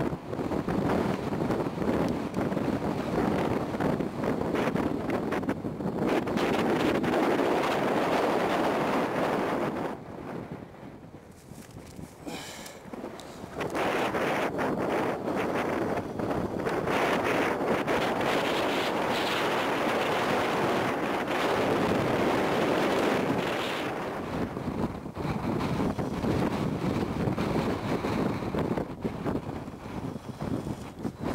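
Wind buffeting the camera microphone in gusts on an exposed mountain ridge, dropping off for a few seconds about ten seconds in before picking up again.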